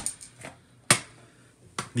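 A single sharp click about a second in, with a few fainter taps around it, as disassembled SIG SG 553 rifle parts (the lower receiver and a magazine) are moved and set down on a rubber work mat.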